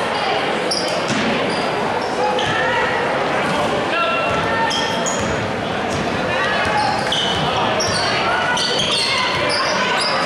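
A basketball being dribbled on a hardwood gym floor, with sneakers giving many short high squeaks, over continuous crowd chatter and calls from the stands.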